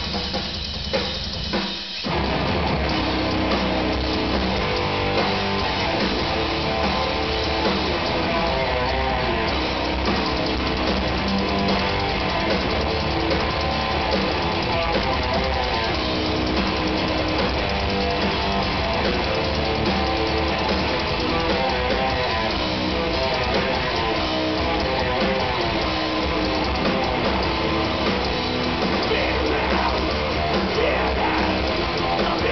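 Heavy metal band playing live with electric guitars and drum kit: a few separate hits in the first two seconds, then the full band comes in about two seconds in and plays on steadily and loud.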